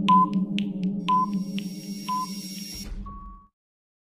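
Countdown stopwatch sound effect: ticking about twice a second with a short beep on each second, three beeps in all, over a low steady hum. About three seconds in comes a final, slightly higher and longer beep, and then the sound cuts off suddenly.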